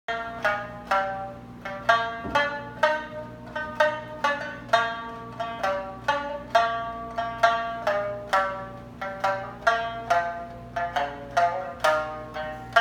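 Ukulele played solo, plucked notes and strummed chords ringing briefly in a steady rhythm of about two beats a second, with no singing.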